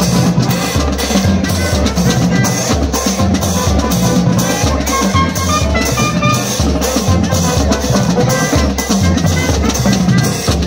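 Brass marching band playing live: sousaphones and brass carry a melody over bass drums, snare drums and cymbals keeping a steady beat.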